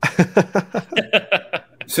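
Men laughing, a quick run of short 'ha' pulses at about five a second.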